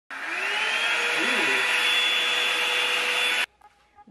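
Revlon One-Step hair dryer brush switched on and running: a steady rush of blown air with a motor whine that rises in pitch as it spins up, then cuts off suddenly near the end.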